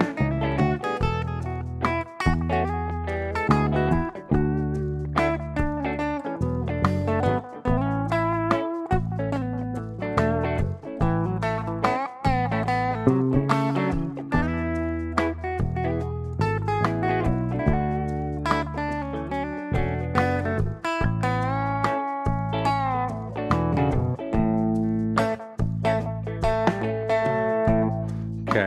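Clean electric guitar from a Telecaster-style guitar improvising single-note lead lines in A major, with some double-stops, over a slow groove backing track with bass and drums.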